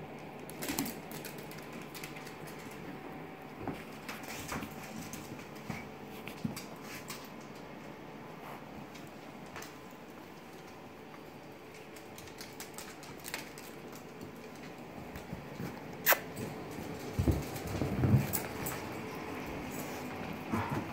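Dogs playing on a hardwood floor: scattered clicks and patter of claws and paws, with one sharp click late on and louder scuffling near the end.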